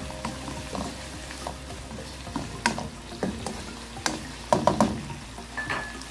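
Black spatula stirring chicken and mushroom pieces in a nonstick wok, with scattered scrapes and taps against the pan over a steady sizzle from the simmering food.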